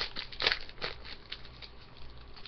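The wrapper of a hockey card pack being torn open and crinkled by hand: a run of crackling rustles, loudest about half a second in, then growing sparser.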